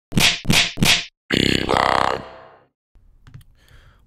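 Short electronic intro sting: three sharp percussive hits in quick succession, then a sustained pitched tone that fades away over about a second.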